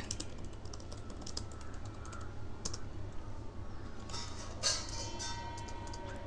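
Computer keyboard typing: a run of light key clicks as terminal commands are entered, followed by a louder stretch with a faint steady hum near the end.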